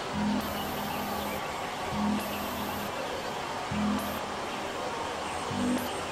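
Experimental electronic noise music from synthesizers: a dense, steady bed of hissing noise with a low pitched drone that swells in four times, about every two seconds, alongside short blocks of very high hiss.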